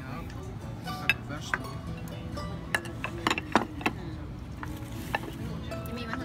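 Ceramic plates and utensils clinking on a dining table: about six sharp clinks, most of them around the middle, over background music. A single cough about two seconds in.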